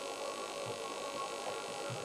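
A pause between sung lines: only the steady mains hum and hiss of an old video recording, with a few faint low thumps.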